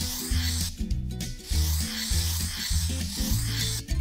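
Background music with a stepping bass line, over the steady scratching of a felt-tip marker drawing lines on cardboard.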